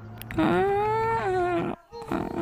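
A puppy's long, drawn-out howl: one call that starts about half a second in, rises slightly in pitch and then falls, and cuts off near the end.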